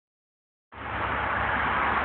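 The 3-litre V6 of a 1992 Chrysler LeBaron idling steadily under the open hood, with an even outdoor hiss over the low engine hum. The sound cuts in abruptly under a second in.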